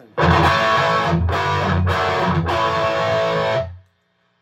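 Electric guitar played loud through the high-gain channel of a PRS Archon amplifier: four distorted chords in quick succession, the last one ringing until it is cut off shortly before the end.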